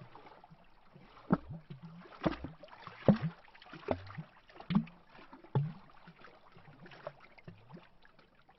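Small lake waves lapping against a tree trunk at the waterline, making hollow glugging plops at an uneven rate of about one a second over a faint wash of water.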